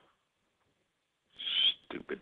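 Near silence, then about a second and a half in a short, breathy sound from a man's voice.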